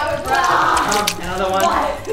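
A woman speaking, asking why she is out of breath.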